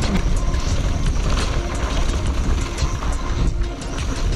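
Wind rushing over the microphone and a mountain bike rattling as it rolls fast down a dirt singletrack, with many small clicks and knocks from the bike over the bumps.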